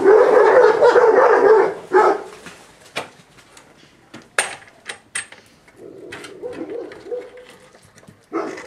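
A Moscow Watchdog puppy, caught at a wooden fence, cries out loudly for about two seconds, then whines more quietly near the end. A few sharp knocks come in between.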